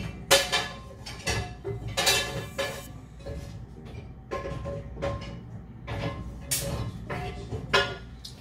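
Dishes and cookware clinking and clattering as they are loaded into a dishwasher: a string of sharp knocks and clinks, some with a brief ring after them.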